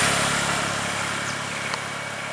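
Motorbike engine running at idle, a steady low hum under road noise, slowly getting quieter.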